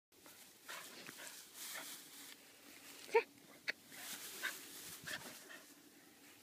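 Schnauzer giving a short, high bark about three seconds in, then a second, briefer one half a second later, with soft rustling in between.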